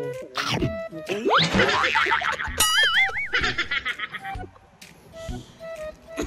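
Cartoon comedy sound effects and music: a quick rising whistle-like glide about a second and a half in, then a wobbling boing about half a second long.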